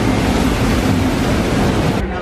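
Steady rushing noise of wind buffeting the microphone on a moving open-air ride, over a low rumble from the ride vehicle.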